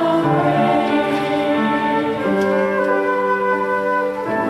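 Church choir singing with piano accompaniment, in slow, sustained chords.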